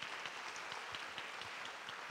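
Audience applauding, faint and steady, a dense patter of many separate claps.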